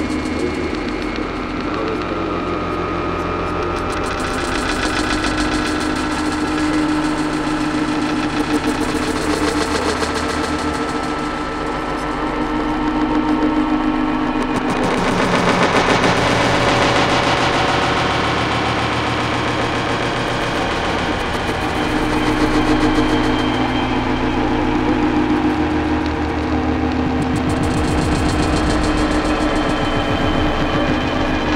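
Power-electronics noise music: a steady low hum over rumbling drones that shift every few seconds, with harsh noise swelling about halfway through.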